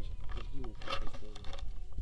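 Wind rumbling steadily on the microphone, with short snatches of indistinct voices in the first half.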